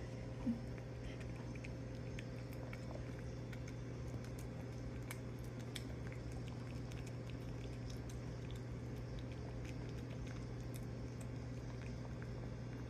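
Cat eating wet food from a ceramic dish: small, irregular licking and chewing clicks over a steady low hum, with one short low blip about half a second in.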